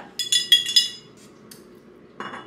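Metal spoon clinking against a glass jar of coffee as it is stirred: a quick run of ringing clinks in the first second, then one faint tick.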